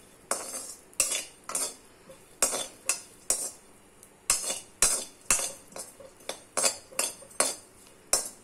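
Perforated metal ladle scraping and knocking against a metal kadai while chopped coconut is dry-roasted, in quick strokes about two a second.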